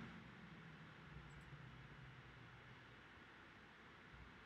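Near silence: faint room tone with a low hum, and a couple of faint computer mouse clicks about a second and a half in.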